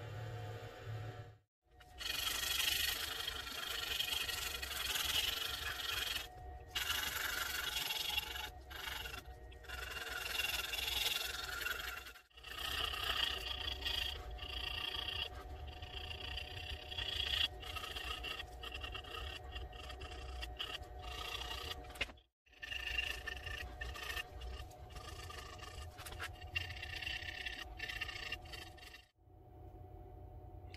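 Carving knife and hook knife blades scraping and shaving a wooden crankbait body by hand, a rough steady scraping that breaks off and restarts several times.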